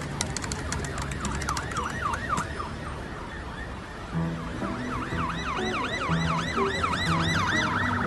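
A yelping siren, its pitch sweeping up and down about three times a second, growing louder about halfway through, over low held music notes. A rapid ticking runs through the first couple of seconds.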